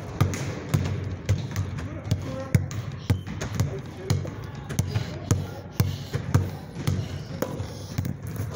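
Basketball dribbled hard on a hard floor in a crossover drill between the legs, one sharp bounce about every half second.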